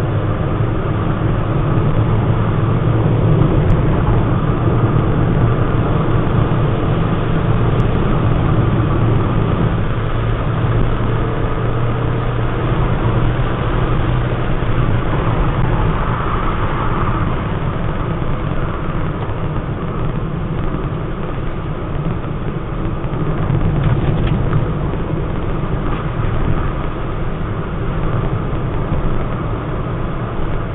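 Car driving, heard from inside the cabin: steady engine hum and road noise.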